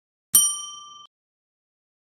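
A single bell 'ding' sound effect, struck about a third of a second in, its several clear high tones fading and then cutting off after about a second. It is the notification-bell click of a subscribe-button animation.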